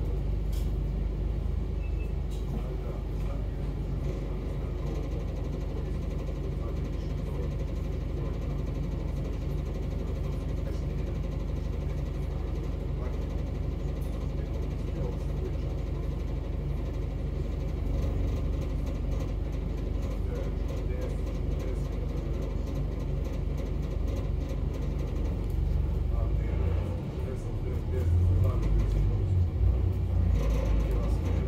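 Double-decker bus engine running with a steady low rumble, heard from inside the upper deck while the bus waits in traffic. Near the end the engine note grows louder as the bus pulls forward.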